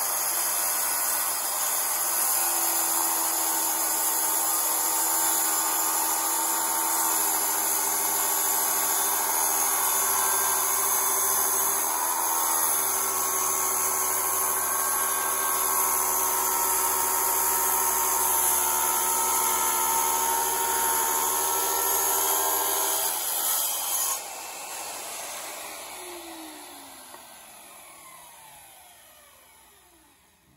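Tile saw running and cutting through a geode, the blade grinding steadily through the stone. About 24 seconds in the saw is switched off and spins down with a falling whine.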